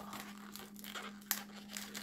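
Inflated latex modelling balloon being twisted and handled, rubber rubbing against fingers with scattered small clicks, the sharpest about a second and a half in.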